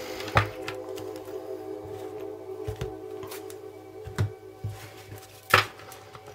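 Soft sustained background music, with a few sharp taps and clicks of cards being handled and set on the tabletop, the loudest near the end.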